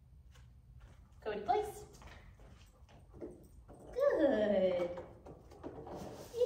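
A woman's voice giving a dog short spoken commands and praise, a few brief words with pauses between, the longest near the end, with faint light clicks in the gaps.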